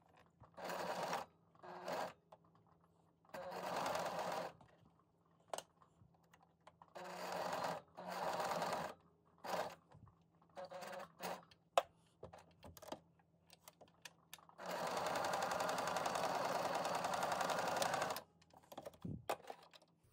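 Electric sewing machine stitching through layered cotton in stop-start runs of about a second, with small clicks in the pauses, then one longer run of about three and a half seconds near the end.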